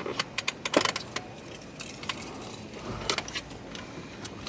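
Metal buckle and latch hardware clinking and clicking against plastic as a car seat's connector is fished for between the back-seat cushions. There is a run of quick clinks in the first second and a few more about three seconds in.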